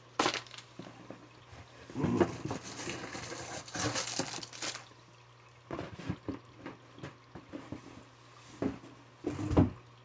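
Cardboard boxes and packaging being handled and rummaged through: irregular bursts of rustling and scraping with quiet gaps, and a heavier thud near the end.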